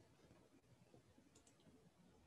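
Near silence: faint room tone with two soft computer-mouse clicks close together about one and a half seconds in.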